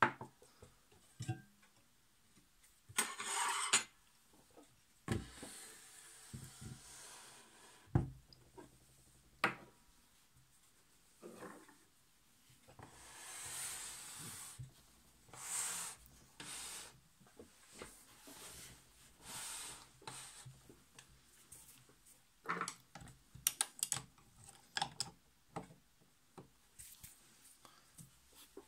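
Small metal parts of a Necchi Supernova sewing machine's handwheel assembly being handled and fitted by hand: scattered clicks and knocks against the tabletop and the machine, with several stretches of about a second of scraping and rubbing.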